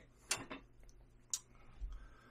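A few light clicks and ticks of wood-carving gouges being handled on a wooden bench, the sharpest about a second and a half in, followed by a soft low thump near the end.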